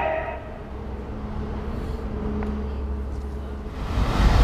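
Music breaks off just after the start, leaving a low, steady outdoor background rumble with a faint steady hum for the rest of the moment.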